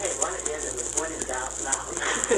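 Indistinct talk on a 1940s home-recorded acetate 78 rpm disc, over the disc's steady surface hiss with small clicks and a low hum.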